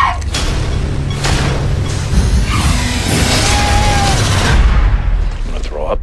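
Film-trailer score and sound design: a low rumble with booms under a hissing swell that builds through the middle and cuts off suddenly near the end.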